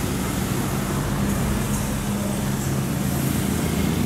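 Road traffic: cars and motorcycles going round the bend, over a steady engine hum.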